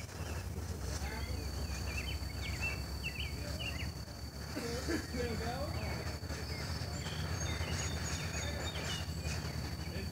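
Outdoor ambience: repeated short bird chirps and a steady thin high-pitched tone over a constant low rumble. No mortar launch or blast is heard.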